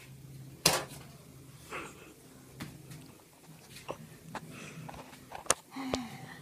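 Two sharp clicks, about five seconds apart, with small knocks and rustling between them, over a low steady hum.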